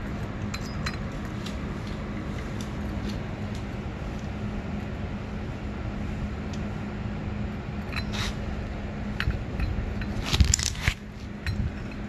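Light metallic clinks of C-clamp vise grips knocking against an aluminium clutch hub as they are fitted and repositioned, with a short run of louder clinks about ten seconds in. A steady low hum runs underneath.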